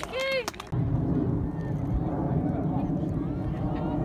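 A brief voice, then about a second in an abrupt switch to touchline ambience at a grassroots rugby league match: a steady low rumble with faint, distant spectator and player voices.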